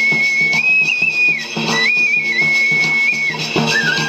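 Bansuri (side-blown bamboo flute) playing a high folk melody of long held notes that step up and down in pitch, in two phrases with a short breath between them, over a lower rhythmic accompaniment.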